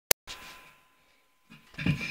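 Mobile phone being handled as it starts recording: a sharp click right at the start, then faint rustling and a louder bump or scrape near the end as it is moved.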